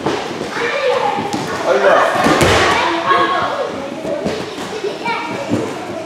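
Men's voices in a large, echoing training hall, with a heavy thud on the wrestling mat a little over two seconds in.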